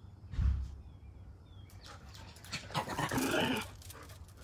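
A dog vocalizing: a rough, pitched sound of about a second near the end, with a short low thump about half a second in.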